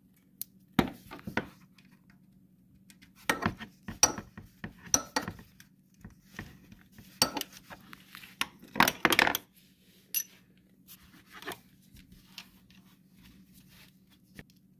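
Metal hand tools clinking and clicking: a small 8 mm socket and ratchet being picked up, fitted and worked at the oil filter cover screws of an ATV engine, in scattered sharp clicks with a busier run in the middle.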